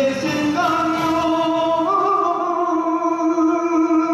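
A man singing a copla, stepping up in pitch twice and then holding one long sustained note.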